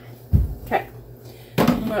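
A single dull, deep thump about a third of a second in, then a short voice sound and a woman saying 'Oh' near the end.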